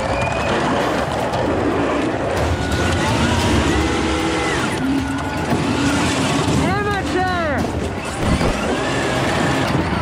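Go-karts driving on wet asphalt, with voices shouting over the running karts and a run of quick rising-and-falling cries about seven seconds in.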